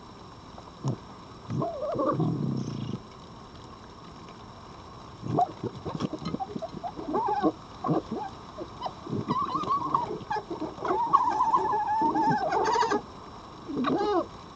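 Wild red foxes gekkering: bursts of rapid, stuttering chattering calls, thickest from about five seconds in, with a wavering whine near the end. It is the sound of two foxes squabbling face to face at a food dish.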